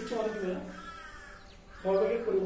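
A man's voice speaking in a lecture, trailing off and going quiet about a second and a half in, then starting again just before the end.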